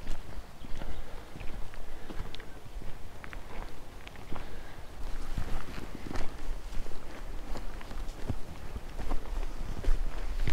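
Footsteps on a stony dirt track, an irregular run of steps, over a low steady rumble.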